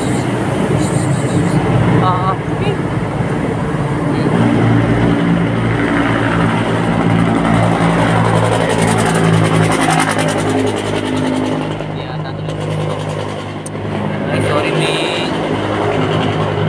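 A running engine: a steady low hum whose pitch shifts a little, easing slightly in loudness near the end.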